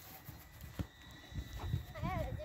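A football being played on artificial turf: one dull thud of a touch or kick about a second in, with a few softer low knocks around it.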